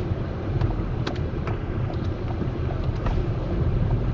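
Steady low rumble of a car's engine and tyres heard inside the cabin at walking pace, with a few faint clicks.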